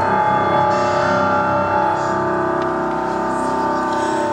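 Piano accompaniment playing a slow introduction of held chords.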